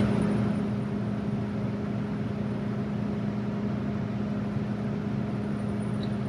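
John Deere 70 Series combine's diesel engine running at high idle, heard inside the cab as a steady drone with a constant low hum. It runs while the header raise switch is held during a header calibration.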